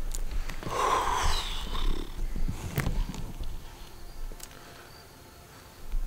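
A person's loud, breathy exhale close to the microphone, starting about half a second in and lasting about a second and a half. A few sharp clicks follow, then it goes quieter.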